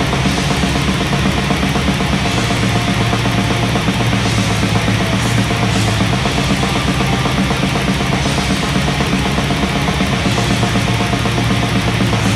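Blackened death metal: distorted guitars and rapid drumming, dense and steady without a break.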